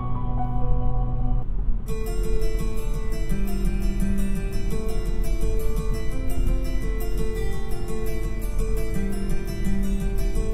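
Music playing over the Mazda 3's 12-speaker Bose car audio system, heard in the cabin. A classical track ends and a rock track begins about two seconds in, opening with bright, crisp plucked notes over a steady low rumble.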